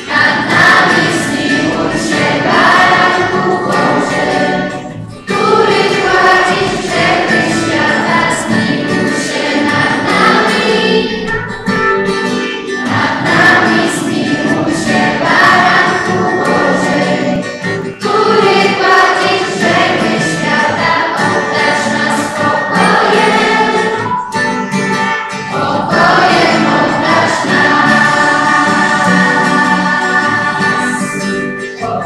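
Choir singing a church hymn, in sung phrases of several seconds with short breaks between them.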